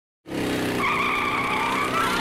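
Hot rod coupe launching hard with its rear tires squealing over the engine noise. The sound cuts in suddenly a quarter second in, and a steady high squeal joins just under a second in.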